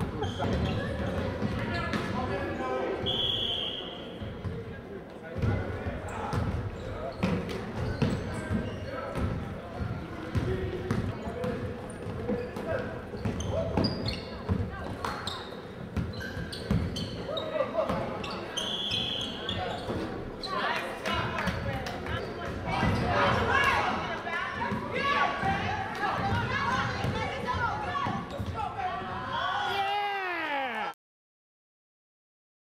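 Basketball game in a gymnasium: a ball bouncing on the hardwood floor with many short knocks, with voices echoing in the large hall. A short, high referee's whistle sounds twice, about three seconds in and again about nineteen seconds in.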